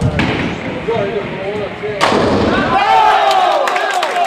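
A nine-pin bowling ball lands on the lane and rolls with a low rumble, then about two seconds in crashes sharply into the pins, followed by voices.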